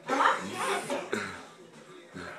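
A person's short, loud vocal burst, lasting about a second at the start, then fading into quieter sounds.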